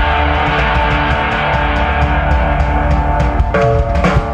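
Live rock band playing on a stage PA: electric guitars and bass over a steady drum beat.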